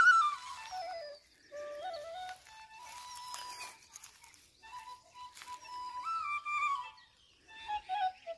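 Middle-D bamboo flute playing a slow melody in short phrases, the notes moving in steps, with brief pauses about a second in and near the end.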